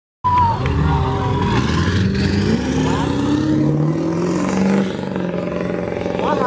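Car engine accelerating, its pitch climbing steadily for about three seconds, then dropping back near the end. The sound cuts in abruptly just after the start.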